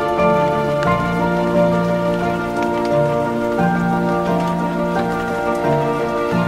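Gentle background music of slow, held notes and chords, with a soft patter like light rain layered over it.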